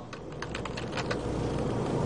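A quick run of light clicks from typing on a computer keyboard, about eight to ten keystrokes in the first second, then a steady low background noise.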